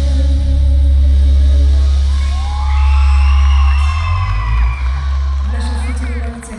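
Live amplified pop band playing a sustained chord with heavy bass and a long held vocal note; the bass drops out near the end as the song winds down.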